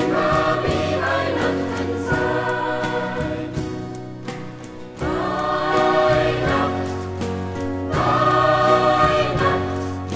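A choir singing a song in long, swelling phrases, with a brief lull about four and a half seconds in before the voices come back in strongly.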